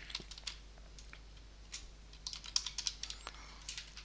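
Computer keyboard typing: scattered keystrokes in short runs of a few clicks, over a faint steady low hum.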